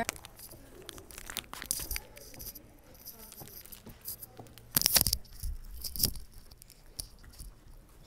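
Rustling and handling noise from a hand-held phone carried while walking, with soft scattered clicks and scuffs, and a loud rustle about five seconds in.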